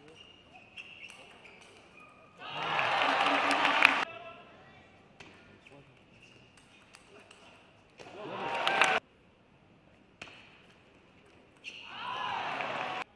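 Table tennis rallies: a celluloid ball clicking off paddles and the table, broken three times by loud bursts of crowd shouting and cheering that stop abruptly at edit cuts, the second one building up before it stops.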